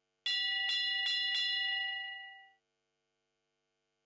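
A bell struck four times in quick succession, each stroke ringing with a clear multi-tone ring that fades out over about a second after the last stroke. It is the judge's bell in show jumping, signalling the next rider to start the round.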